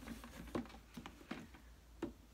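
A few faint taps and rustles of a cardboard toy box with a clear plastic window being handled and turned.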